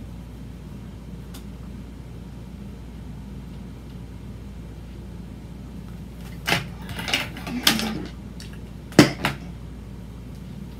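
Handling noises: after several seconds of faint steady low hum, a quick series of knocks and short scrapes in the second half, the sharpest knock near the end.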